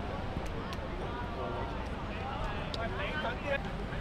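Several people's voices talking and calling out over a steady low outdoor rumble, with someone saying "yeah" and laughing near the end.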